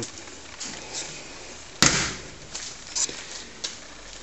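A single sharp knock a little under two seconds in, dying away over about half a second, with a few faint small ticks after it.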